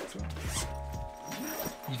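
Zip of a fabric bag being pulled open in two rasping strokes, one about half a second in and another near the end.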